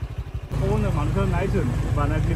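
Motor scooter riding over a rough dirt track, heard as a low rumble of engine and wind on the microphone that starts about half a second in. A person's voice is heard over it.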